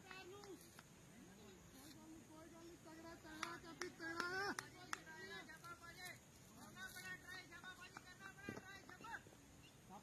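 Faint voices of people talking at a distance, with a few short, sharp clicks scattered through the middle.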